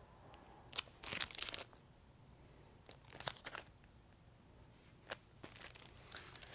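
Plastic-wrapped vinyl LP jackets being handled: faint crinkling and rustling of the plastic and cardboard in a few short bursts, with a brief tick near the end.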